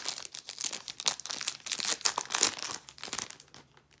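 Foil trading-card pack wrapper being torn open and crinkled by hand, a dense crackle that dies away about three and a half seconds in.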